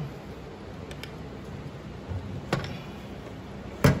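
Draw handle and its metal pivot pin being fitted onto a Taylor C712 soft-serve machine's freezer door: light handling ticks, then two sharp clicks of plastic and metal parts, the second louder and near the end.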